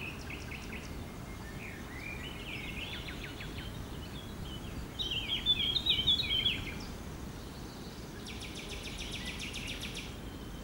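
Songbirds singing over a steady low rush of flowing river water, with a loud burst of song about halfway through and a rapid, even trill near the end.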